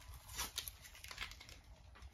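Layers of tape being picked at and peeled off a plastic side cover: faint crinkling and a few short tearing sounds.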